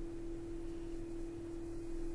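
A steady electronic tone at a single pitch, like a sine wave, holding without change.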